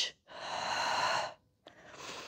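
A woman's long, forceful breath out, lasting about a second, as she curls up in an abdominal crunch. A fainter breath follows near the end.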